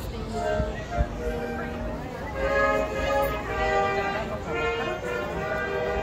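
Live music from an outdoor festival stage, a pitched melody of held notes, heard from within the crowd with people talking around the microphone. A single sharp knock about a second in.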